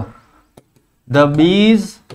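A man's voice: one drawn-out vocal sound, rising and falling in pitch, starting about a second in and lasting most of a second.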